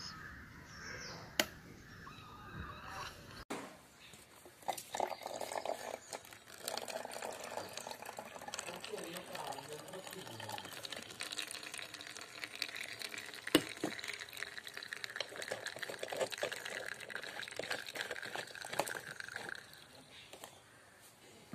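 Water trickling from an upside-down plastic bottle into a paper cup in a homemade bottle-and-cardboard water dispenser model, with faint voices in the background. A single sharp tap comes about two-thirds of the way through and is the loudest sound.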